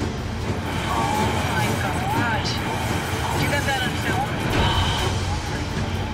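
Background music with people's raised, wavering voices shouting over it, above a dense low rumble.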